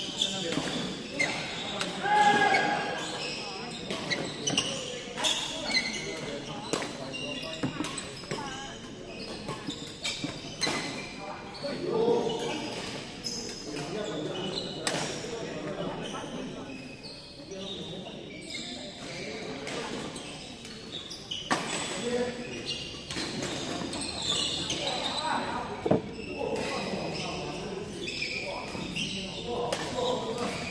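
Badminton rackets striking a shuttlecock in a rally, sharp pops at irregular intervals throughout, echoing in a large hall, with voices in the background.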